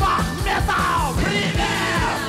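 Live rock band playing: a male lead singer's voice sliding up and down in pitch over drums beating about four times a second, with electric guitar, bass guitar and violin.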